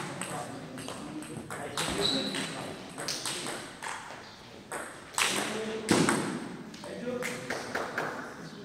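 Table tennis ball clicking off bats and the table: a few scattered sharp hits between points, with a new rally starting near the end. The hall is echoey and indistinct voices run underneath.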